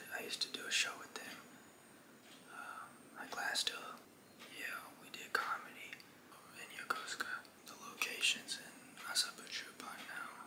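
A man whispering close to the microphone, in short phrases with brief pauses.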